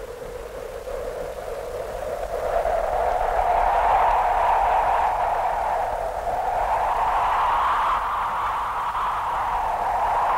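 Wind and surf from a rough, whitecapped sea: a steady rushing noise that swells about two to three seconds in, dips slightly around six seconds, then rises again.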